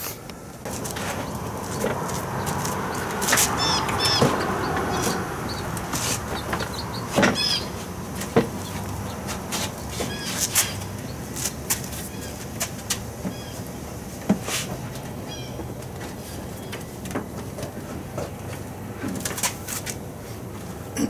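Scattered clicks and knocks of hand tools and plastic trim as a Chevy Suburban's front bumper and grille are unbolted and worked loose, with birds chirping in the background.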